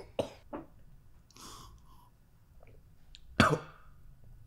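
A man coughs once, loudly and abruptly, near the end.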